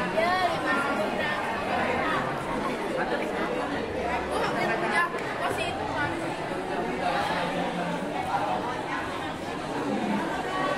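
Many students' voices chattering at once, overlapping, with no single voice standing out.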